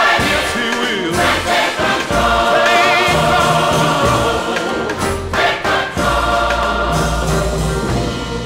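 Gospel choir singing with instrumental backing, a held low bass note coming in near the end.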